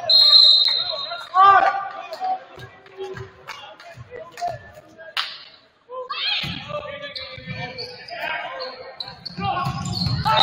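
Volleyball rally in a gymnasium hall: a short high referee's whistle at the start, then the ball bouncing and being struck several times, with players' voices echoing.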